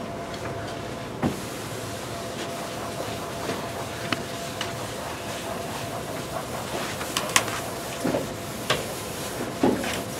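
Blackboard being wiped with an eraser, with scattered soft knocks and taps against the board, more of them in the second half. A steady room hum and hiss lie under it.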